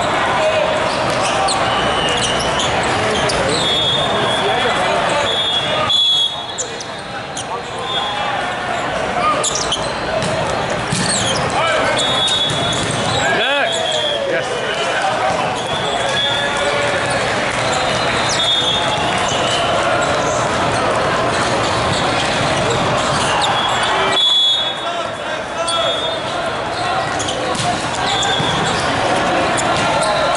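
Busy indoor volleyball hall: a constant babble of players' and spectators' voices from many courts, with volleyballs being hit and bouncing on the court floor. Several short, steady, high whistle blasts, typical of referees' whistles, sound at intervals.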